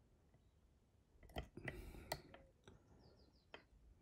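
Faint, sparse clicks and a soft scraping of a dimple pick and turner working the pins of a Mul-T-Lock Integrator mortice cylinder, starting about a second in. The lock is lightly tensioned and chatty.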